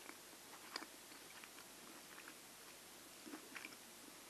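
Faint close-miked chewing and wet mouth clicks of someone eating a pan-fried minced-meat dumpling, scattered irregularly over a low hiss, with the loudest click about a second in and a small cluster near the end.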